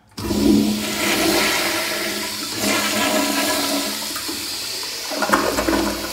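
Early-1960s Crane Saneto toilet flushed by its flushometer valve: a sudden loud rush of water begins just after the start, with a second surge about five seconds in. The valve cuts off far too early, at about one gallon per flush by the uploader's account, so it often takes two flushes to clear the bowl.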